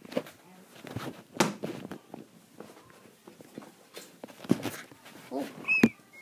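Scattered thumps, knocks and footsteps as a child moves through an indoor obstacle course, with brief bits of a child's voice; a sharper knock and a short high-pitched voice sound come near the end.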